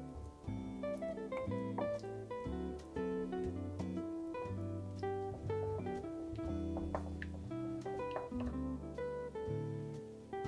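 Background music of a plucked acoustic guitar, one note or chord following another at an even pace.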